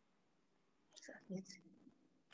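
Near silence, broken about a second in by a brief, faint, indistinct human voice.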